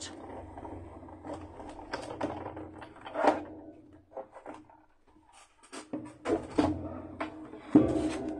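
Die-cutting machine running a cutting-plate sandwich with a circle die through its rollers, a steady hum for about four seconds. Then plastic cutting plates click and knock as they are pulled out and separated.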